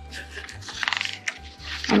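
Quiet background music, with paper and packaging rustling for about the first second as the instruction manual is handled. A woman's voice starts at the very end.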